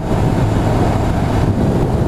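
Honda NC750's parallel-twin engine running at a steady cruise, mixed with heavy wind noise on the microphone.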